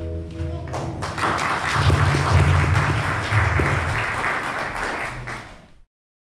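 The last held note of the children's song ends under a second in, then a group claps. The clapping stops abruptly just before the end.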